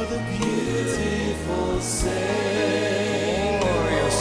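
Slow gospel worship music: voices singing long, held notes over a bass line that changes note about every second.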